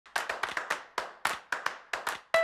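A quick, uneven rhythm of sharp handclaps, about a dozen in two seconds, each with a short ring-out, like a clapped percussion intro.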